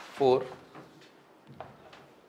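Chalk writing on a chalkboard: faint short taps and scrapes of the chalk stroking the board, with one sharper tap about one and a half seconds in.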